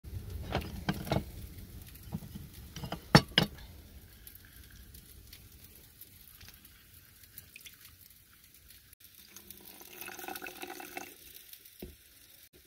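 Hand-held hinged lime squeezer pressing lime halves over a ceramic bowl, with juice dripping into it and handling clatter. Two sharp clicks about three seconds in are the loudest sounds.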